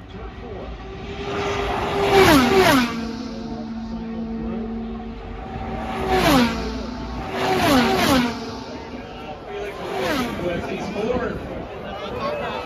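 IndyCars' 2.2-litre twin-turbo V6 engines passing one after another, each a loud whine that drops sharply in pitch as the car goes by. A close pair goes by about two seconds in, a single car about six seconds in, another pair about eight seconds in, and fainter ones about ten and eleven seconds in.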